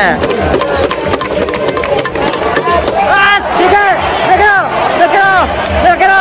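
Stadium crowd at a baseball game clapping in rhythm. From about three seconds in, a cheering tune of short repeated notes comes in over the crowd.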